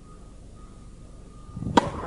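Tennis racket striking the ball on a serve: one sharp pop near the end, with a short rush of the swing just before it and a brief ring of the hall's echo after.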